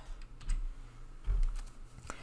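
A few faint clicks of a computer keyboard, with a couple of low thumps.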